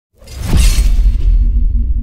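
Whoosh-and-crash sound effect: it swells in quickly, hits a bright crashing burst about half a second in, then carries on as a loud deep rumble.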